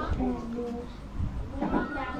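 A person's voice, with words that were not written down, over a low uneven rumble.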